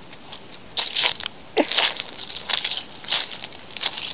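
Footsteps crunching on dry fallen leaves and gravel at a walking pace, about five steps.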